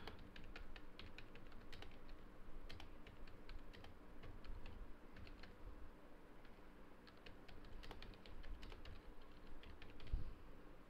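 Typing on a computer keyboard: quick runs of faint keystrokes with short pauses between words.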